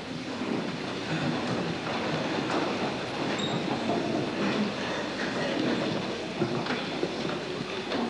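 A church congregation settling into wooden pews: steady shuffling and rustling, with scattered knocks and creaks.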